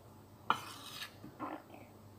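A sharp clink on a ceramic plate about half a second in, followed by softer scraping and handling sounds of tableware.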